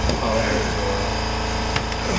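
A steady, low mechanical hum of a machine running, with faint talk over it and a single sharp click near the end.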